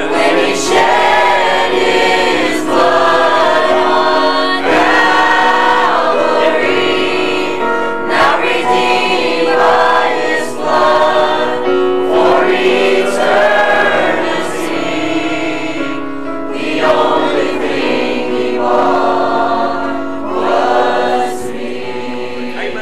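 Mixed church choir singing a gospel song together, in phrases a few seconds long over steady sustained accompaniment.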